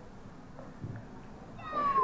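Electronic voice of a button-activated Happy Meal Peanuts toy girl figure giving a short, high-pitched, falling cry about a second and a half in.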